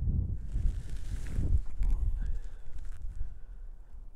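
Wind buffeting an outdoor camera's microphone: an uneven low rumble, with a hiss of gusting noise from about half a second to a second and a half in.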